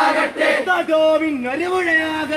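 A crowd of young men chanting a political slogan in Malayalam, the words drawn out in long held notes that slide up and down.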